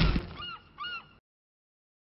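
The tail of music breaks off, then two short nasal honks, each rising then falling in pitch, about half a second apart, like a cartoon goose honk sound effect.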